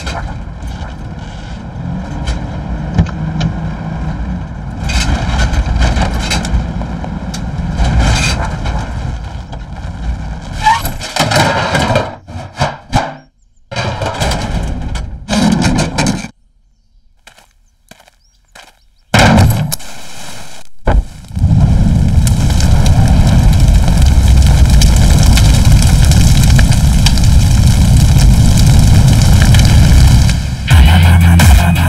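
Film soundtrack sound effects: vehicle noise at first, then sudden cut-outs to near silence and sharp loud hits, ending in a loud, steady, deep rumble.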